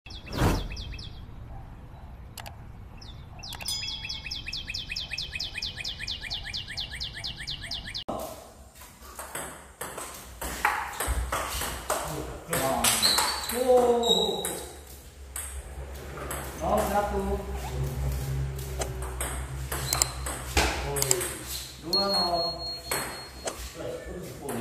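Doubles table tennis rallies: the plastic ball clicking off paddles and the table in quick, irregular strokes, with players' voices between points. The first several seconds instead hold a rapid, even ticking with a high tone.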